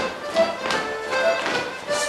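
Morris dance tune played on a folk instrument, held melody notes with several sharp taps in among them.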